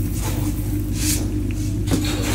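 Coriander seeds poured into a wok of oil with onions and whole spices, a faint brief hiss about a second in, over a steady low machine hum.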